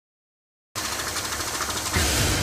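Silence, then about three quarters of a second in a dense, fast-pulsing buzz starts suddenly and holds steady: the opening of an intro soundtrack that runs straight into music.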